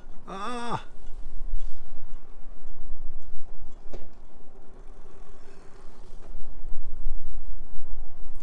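Wind buffeting the microphone, a low rumble that rises and falls in gusts. About half a second in there is a brief wavering vocal sound, and a single click about four seconds in.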